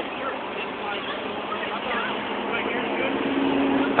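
Outdoor street background: a steady noise haze with faint, indistinct voices, and a steady low hum in the last second or so.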